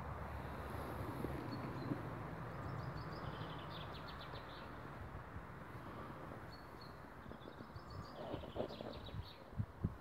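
Faint outdoor ambience with a small bird singing quick high trills, about two and a half seconds in and again near the end, over a low rumble. A few soft knocks near the end.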